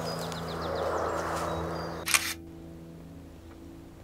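A single loud camera shutter click about two seconds in, sharp and brief, over soft outdoor ambience with high chirps and low steady tones. After the click the outdoor hiss falls away.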